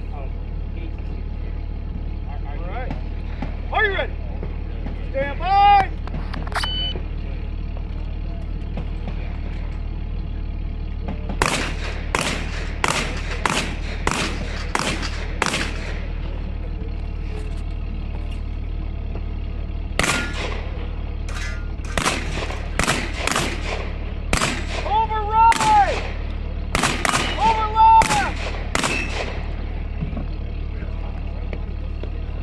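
Strings of rapid gunshots from a competitor firing a stage: about nine shots in quick succession, then after a pause about a dozen more. A short beep sounds several seconds before the first shots, and a steady low hum runs underneath.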